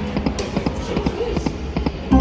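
Lock It Link Nightlife video slot machine's spin sounds: a quick run of short electronic blips and ticks, several a second, as the reels spin and stop one after another.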